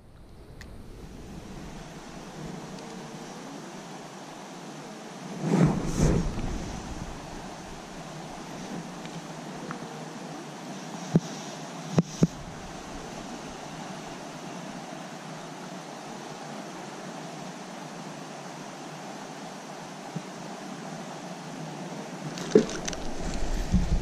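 Steady rush of creek water, with a louder deeper surge of wind or handling noise about six seconds in and a few sharp clicks about halfway through.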